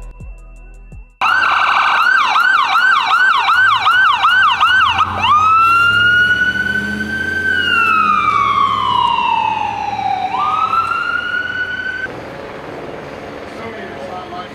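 Falck paramedic ambulance siren going past: a fast yelp of about three sweeps a second, switching about four seconds in to a slow wail that rises, falls and rises again, then cuts off near the end.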